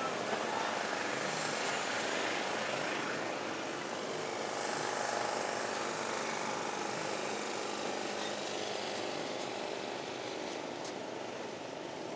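Steady drone of distant personal watercraft (jet ski) engines running.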